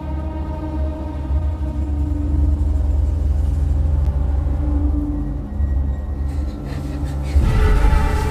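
Suspenseful horror-film underscore: a low rumbling drone with held tones, swelling into a louder, brighter hit near the end.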